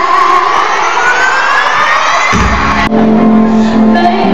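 Live pop concert music recorded from within a cheering crowd: a long rising electronic sweep over the band. It breaks off abruptly about three seconds in, and a steady held low synth chord follows.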